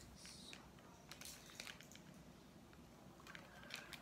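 Near silence with a few faint scattered clicks and rustles of small plastic containers being handled, as glitter pots are picked over.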